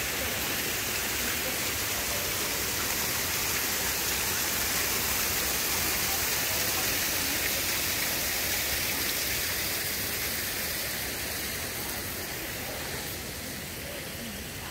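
Water running down the face of a stone wall in many thin streams, a steady hiss of falling and splashing water that fades gradually over the last few seconds.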